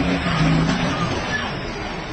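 Semi truck's engine running, a steady rumble with a low hum in the first second, as the rig moves through a tight gap.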